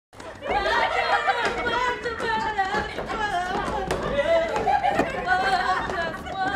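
A group of women's voices chattering and calling out over one another, loud and lively, with no single clear speaker.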